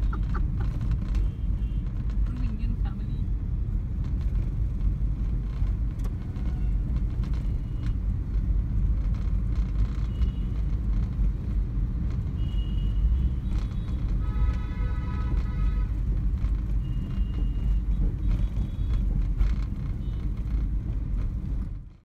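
Steady low rumble of road and wind noise from a moving vehicle in traffic, with a steady pitched tone lasting about two seconds about two-thirds of the way through, and a few brief high beeps. The sound fades out right at the end.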